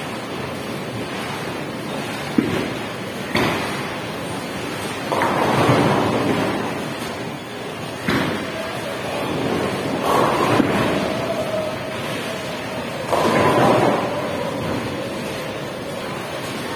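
Bowling alley lane noise: the rumble of bowling balls rolling down the wooden lanes and crashing into pins, in three swells, with a few sharp knocks between them.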